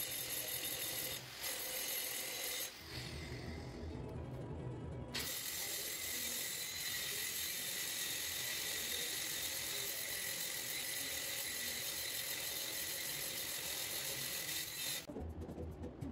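Angle grinder grinding steel at the welded joints of a square-tube frame: a steady high whine with the hiss of the disc on metal. It breaks off for about two seconds near the start and stops about a second before the end.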